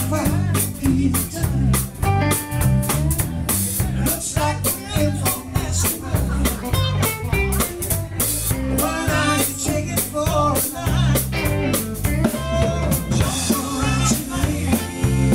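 Live rock and roll band playing, with a drum kit keeping a steady beat under electric guitar.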